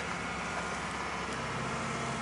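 Steady low hum of an engine running in the background.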